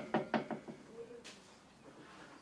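Knocking: a quick run of about five raps in the first second, each softer than the last.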